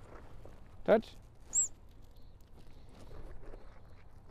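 A single short, sharp high-pitched chirp about a second and a half in: the trainer's bridge signal marking the moment a sheep touches its target, right after the spoken cue "Touch".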